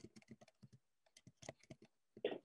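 Faint typing on a computer keyboard: a quick, uneven run of keystrokes with a short pause midway, as a search query is typed.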